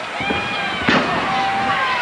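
A wrestler's body hitting the ring canvas, one sharp slam about a second in, over crowd noise and a long held voice.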